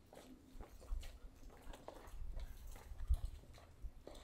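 Faint, irregular footsteps of people walking, a few soft knocks spread over the seconds, over a low rumble on the microphone.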